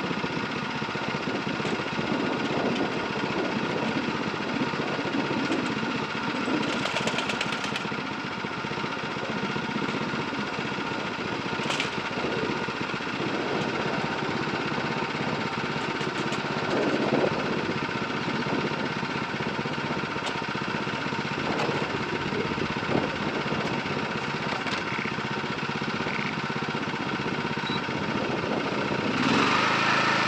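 Rice transplanter's small engine running steadily at idle while seedling mats are loaded onto it, with a few light knocks; the engine gets louder near the end.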